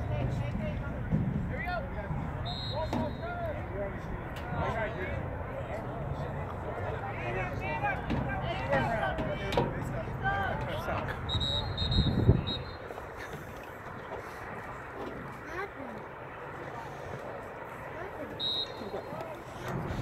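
Overlapping shouts and calls from players and spectators, over a low rumble. There are a few brief high-pitched tones about 3, 12 and 18 seconds in, and a single loud thump near 12 seconds.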